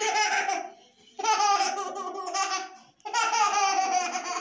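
A young child laughing in three long bursts of high-pitched laughter.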